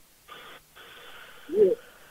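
Faint hiss of a telephone line during a pause in the call, with one short, low vocal sound, like a brief "hm", about one and a half seconds in.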